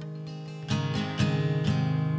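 Instrumental passage of a slow worship song: acoustic guitar strumming chords over held low notes. It is soft at first and grows fuller under a second in, with a few sharp strums.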